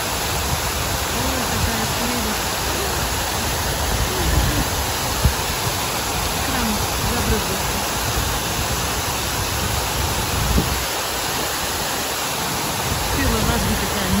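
Water of the Stone Flower fountain rushing and splashing steadily as its jets fall into the basin, a loud, even roar of spray. Faint voices of people nearby can be heard in the background, along with a few brief low bumps of wind on the microphone.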